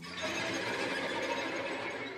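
Bowed string ensemble of violins, violas, cellos and double bass breaking suddenly into a dense, shrill mass of many high notes at once, a scratchy cluster of overlapping bowed tones that eases slightly near the end.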